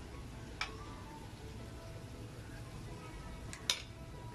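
Batter-coated cempedak pieces frying in a pan of hot oil, a steady low sizzle. Two sharp clicks cut through it, a small one about half a second in and a louder one near the end.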